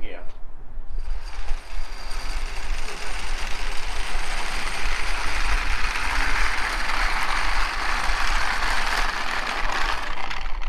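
Small hard casters of wheeled dollies rolling a wooden stand across a concrete apron, a continuous rattling that starts about a second in and grows louder toward the end.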